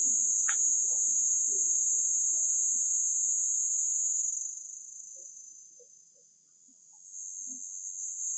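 Steady, high-pitched drone of forest insects, which fades away a little after halfway and comes back near the end.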